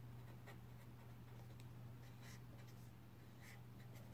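Faint scratching of a pen on paper in a few short strokes as arrows are drawn, over a steady low hum.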